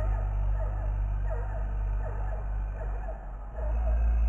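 Title jingle for a programme segment: a steady deep drone with a busy run of short, quick pitch glides above it, without words.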